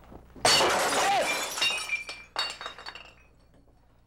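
Glass shattering: a sudden loud crash about half a second in, followed by pieces of glass clinking and tinkling as they fall and settle over the next two seconds.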